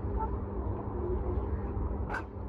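Outdoor street background: a steady low rumble with a constant low hum, and no distinct events.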